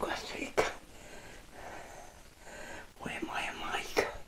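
Quiet, low speech close to a whisper, with one sharp click about half a second in and a quieter pause in the middle.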